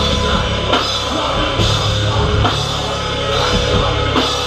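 Live heavy rock band playing: electric guitar, bass guitar and a drum kit, with a heavy low end and cymbal crashes about once a second.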